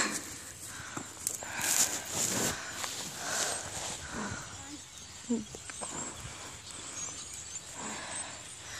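Faint scuffing and rustling outdoors on a dry dirt field, with scattered light knocks and two brief, faint voice sounds near the middle.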